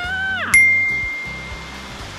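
A single bright bell-like ding, struck about half a second in and ringing down over about a second, over steady background music.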